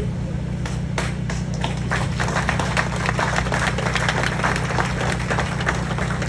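Audience applauding, the clapping building about a second in, over a steady low hum.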